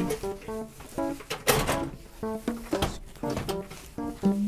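Light background music of short plucked-string notes. About a second and a half in and again near three seconds, sharp plastic clacks sound over it: KTX seat-back tray tables snapping shut.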